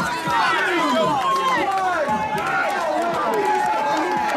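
A crowd of people talking over one another, many voices overlapping at once.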